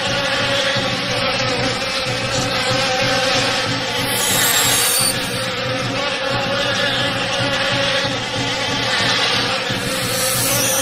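A steady, continuous buzzing drone with a held tone, unchanging throughout.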